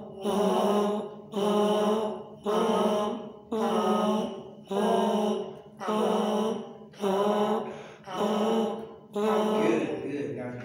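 A man's voice sounding the same sustained note nine times, about once a second, each note held most of a second on one steady pitch: an even sung pulse.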